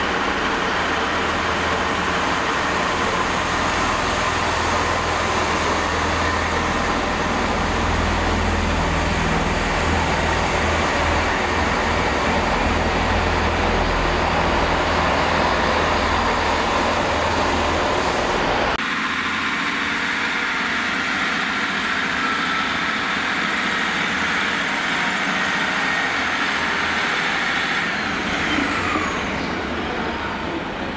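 A GWR Class 166 Turbo diesel multiple unit runs in alongside the platform and passes close by: a steady low diesel engine drone with rumbling wheel and rail noise. This stops abruptly a little past halfway, and a quieter, more distant diesel train follows, with a faint whine that falls in pitch near the end.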